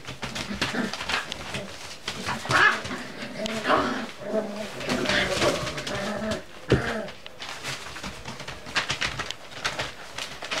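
Cocker spaniel puppies vocalising as they play-fight, with a run of pitched, wavering whines and grumbles through the middle few seconds, over the rustle and crackle of newspaper under their paws.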